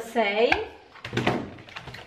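Brief crackle and light knocking of a plastic-wrapped foam meat tray being set down among other trays in a freezer drawer.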